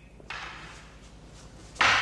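Wooden bokken striking each other twice: a lighter knock about a third of a second in, then a much louder, sharp clack near the end that trails off in the room's echo.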